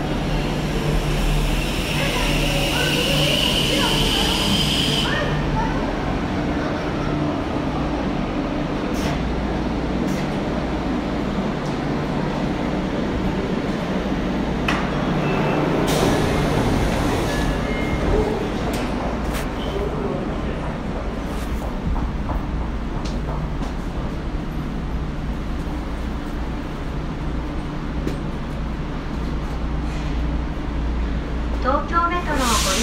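Tokyo Metro 02 series subway train standing at the platform with a steady low electrical hum from its on-board equipment. A high hiss runs for a few seconds near the start, and scattered clicks and a short noisy swell come about halfway through.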